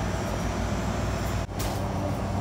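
Steady low hum and rumble of store background noise, with a brief dropout about one and a half seconds in.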